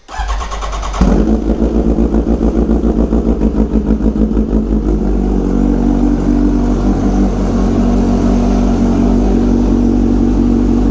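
Kawasaki Ninja H2's supercharged inline-four starting: the starter cranks for about a second, then the engine catches and runs at a loud, throbbing idle that settles to a steadier idle about five seconds in.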